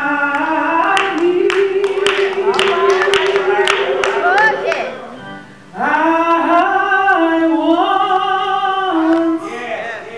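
A woman singing solo into a microphone, holding long drawn-out notes in two phrases with a short break about five seconds in. A run of sharp clicks sounds during the first phrase.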